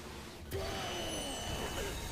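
Soundtrack of the anime episode playing: a sudden hit about half a second in, followed by pitch-gliding vocal-like tones and a thin steady high tone.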